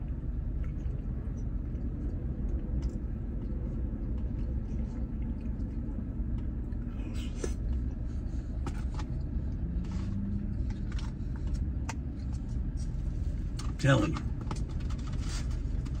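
Steady low rumble of a parked vehicle's idling engine, heard inside the cabin. A few light clicks of a plastic spoon against a small cup come in the middle.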